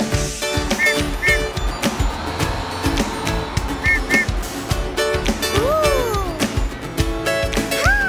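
Upbeat children's-song backing music with no singing, carried by a steady beat, with short paired beeps twice and a couple of rising-and-falling swoops near the end.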